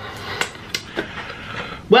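Close-miked chewing of food, with several short wet mouth clicks over a steady hiss, and a spoken word starting right at the end.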